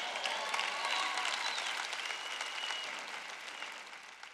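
Large audience applauding, the clapping slowly dying away toward the end.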